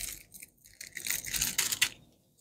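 Small goshenite (colourless beryl) crystal pieces and the small plastic bag they are kept in being handled: scattered light clicks and crinkling, a brief bit at the start and a denser run from about a second in.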